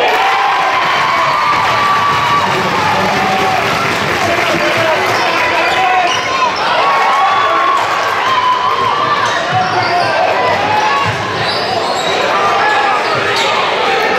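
A basketball is dribbled and bounced on a hardwood gym floor under the steady chatter and shouts of a crowd in the bleachers. A few sharper bounces stand out about six, eleven and thirteen seconds in.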